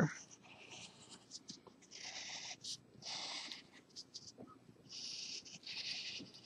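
Coloured pencil scratching on paper, drawing a curve in a series of short strokes about half a second each, faint.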